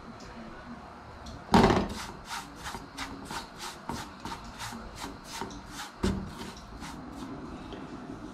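Red silicone spatula stirring and scraping dry, toasted cassava-flour farofa in a small metal frying pan, in quick rhythmic strokes about four or five a second starting about a second and a half in. A single low knock about six seconds in.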